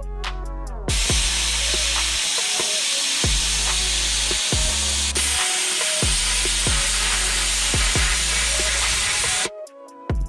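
Plasma cutter hissing steadily as it cuts a curve in sheet steel, starting about a second in and cutting off shortly before the end. Background music with a beat plays throughout.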